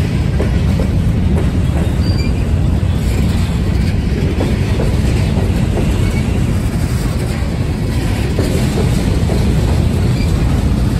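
Loaded-freight-style train of covered hopper cars rolling past close by: a steady, loud rumble of steel wheels on rail with faint clicking over the rail joints and a few brief, faint wheel squeals.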